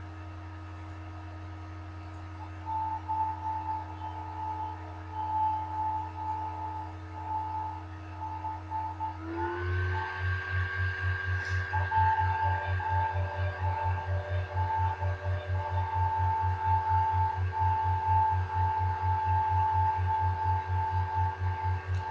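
Shofar sound, not blown on camera: long sustained horn tones that bend up in pitch about nine seconds in and then hold steady. A low pulsing hum lies under them.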